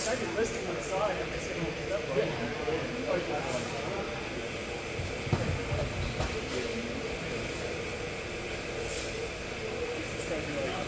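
Large gym's room tone: a steady hum under faint, indistinct voices of people talking in the background, with a dull low thud about five seconds in.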